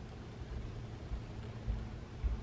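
Quiet room tone with a steady low hum and faint hiss, and a couple of soft, dull low thumps in the second half.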